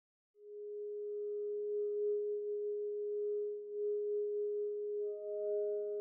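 Electronic background music: after silence, a steady pure synthesizer tone sets in and holds, with a second, higher tone joining near the end.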